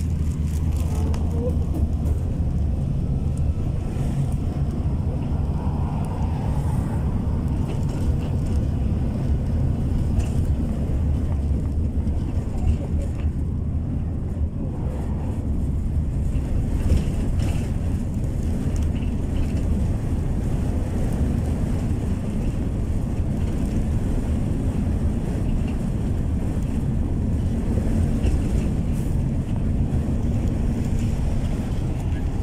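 Bus engine and road noise heard from inside the moving bus's cabin: a steady low rumble.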